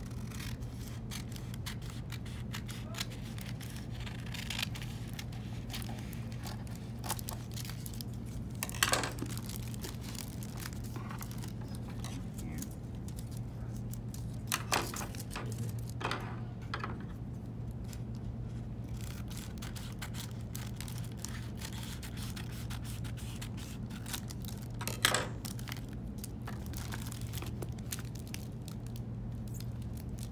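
Scissors snipping along the edge of a book-jacket cover, and the cover crinkling as it is handled: a handful of short, sharp sounds spread out over a steady low hum.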